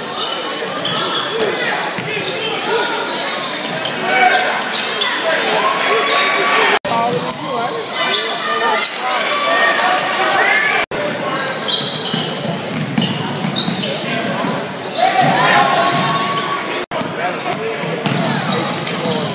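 Echoing gym ambience at a basketball game: many voices from the crowd and players talking and calling out, with a basketball bouncing on the hardwood floor. The sound cuts out sharply for an instant three times.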